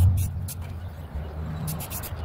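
A low rumble, like a passing vehicle, is loudest at the start and fades away. Short bursts of rapid rattling clicks come once near the start and again near the end.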